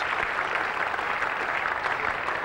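Steady applause at a cricket ground, from teammates and spectators, greeting a batsman reaching his century.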